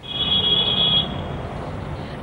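City street traffic noise over a live outdoor news feed, with a steady high-pitched beep for about the first second.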